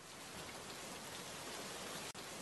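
A faint, steady rain-like hiss with no music.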